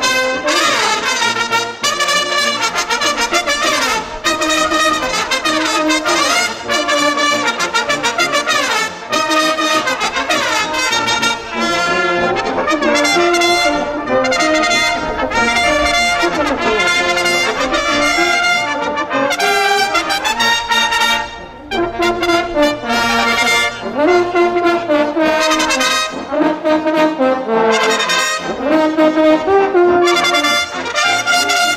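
Bersaglieri brass fanfare, trumpets with lower brass, playing a piece together, with a brief break between phrases about two-thirds of the way in.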